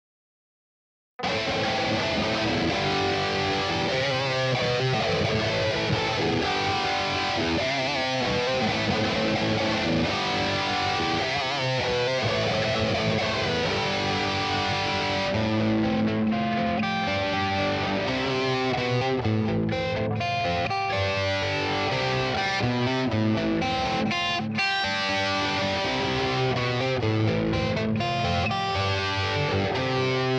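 Distorted electric guitar, an EVH striped guitar, playing a rock riff that starts from silence about a second in, with a slow sweeping effect on the sound through the first half.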